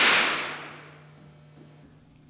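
A single handgun shot: a sharp crack that rings and dies away over about a second in the echo of an indoor range.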